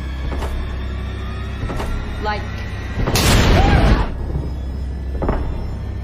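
Tense film score with a single loud boom-like hit lasting about a second, about three seconds in. A brief spoken word comes just before it.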